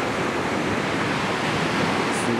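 The 97-metre Kegon Falls plunging into its gorge: a steady, even rush of falling water.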